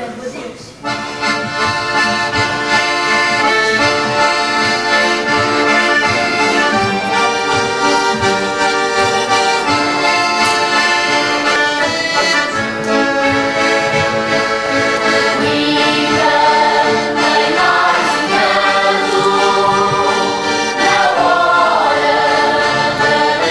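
Piano accordion leading a lively Azorean folk dance tune with guitars strumming along, the music starting about a second in and carrying on steadily.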